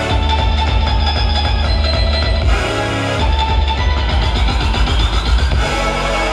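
Loud rock-style backing music with a heavy bass beat, played over the venue's speakers for the freestyle routine.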